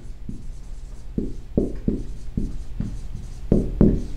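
Dry-erase marker writing on a whiteboard: a run of short, uneven strokes as words are written by hand, the strokes louder near the end.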